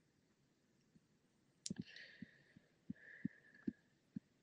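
Faint computer mouse clicks and soft taps in a small room. About one and a half seconds in comes a sharp click, then about six soft taps spread over two seconds, with a faint hiss under some of them.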